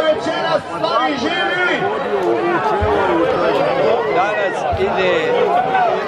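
A group of men shouting and cheering together, many voices overlapping without a break.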